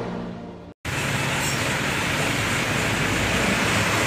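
The tail of a news theme fades out and breaks off in a brief silence. Then comes steady traffic noise from motorbikes and cars driving through a flooded street.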